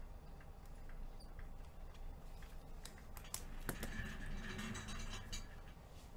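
Trading cards and plastic card holders being handled on a table: scattered light clicks, then a denser run of clicks and scratchy rustling about halfway in that fades near the end.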